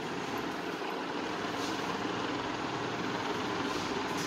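Steady background rumble and hiss, even throughout, with no distinct knocks or clicks.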